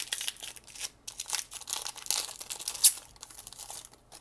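A foil Pokémon booster pack wrapper being torn open and crinkled by hand: an irregular crackle, with one sharp crackle about three seconds in the loudest.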